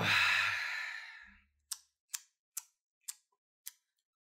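A person's drawn-out, breathy sigh trailing off from a spoken "oh", then a soft low thump and a run of five small sharp clicks about every half second.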